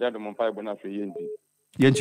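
A voice coming through a telephone line, thin and cut off in the highs, with a short steady tone near its end. It is a phone-in caller's line on the studio phone.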